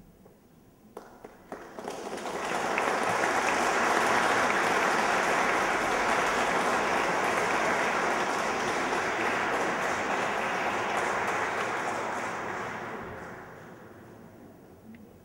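Audience applauding: a few scattered claps about a second in, then full applause that swells quickly, holds steady and dies away near the end.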